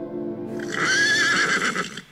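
A horse whinnying once, a wavering call that starts about half a second in over sustained background music and fades out with it near the end.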